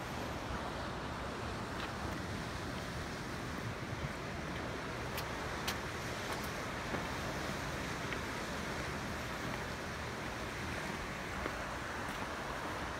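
Steady wash of sea surf breaking on shore rocks, mixed with wind buffeting the microphone. There are a couple of faint clicks about five seconds in.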